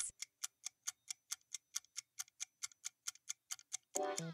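Countdown timer sound effect: a quiet, fast, even clock-like ticking, several ticks a second, marking the answer time.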